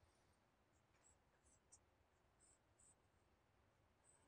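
Faint scratching of a pen on paper: several short strokes in the first three seconds as boxes are drawn around written equations, over near silence.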